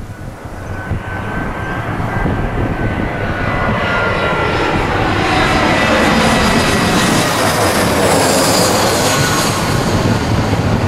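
Airbus A320-family twin-jet airliner on final approach with its landing gear down, passing low overhead. Its engine noise grows steadily louder over the first several seconds and stays loud, and the high fan whine drops in pitch as it goes by.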